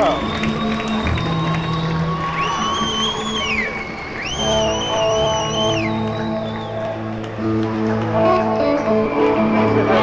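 Live rock band playing in an arena, heard on an audience recording with crowd noise under it. Sustained notes and chords, with a high lead line that bends up, holds and drops twice around the middle.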